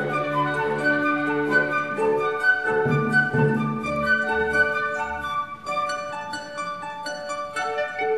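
Chamber orchestra playing an instrumental passage of classical music, a flute line moving in short notes over bowed strings.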